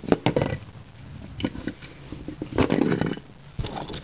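Plastic LEGO bricks clicking, rattling and scraping on a wooden floor as toy robots are pushed around by hand. There is a cluster of clicks at the start, a few more about a second and a half in, and a longer rattling bout near the three-second mark.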